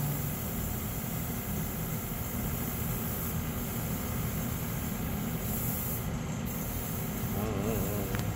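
Steady background machine noise: a continuous low hum with a hiss that swells and fades now and then in its highest register. A brief voice comes in near the end.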